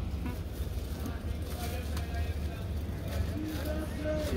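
Outdoor market background: faint voices talking over a steady low rumble.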